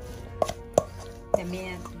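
Hand mixing squid pieces with spice in a stainless steel bowl: three sharp knocks as the hand and squid strike the metal bowl.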